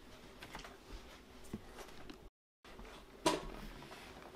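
Faint scattered clicks and taps, broken by a moment of dead silence at an edit about two and a half seconds in, then one sharper click just after.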